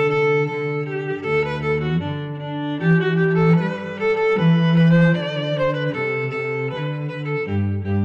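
Instrumental background music: slow, held notes with a lower line beneath, the notes changing every second or so.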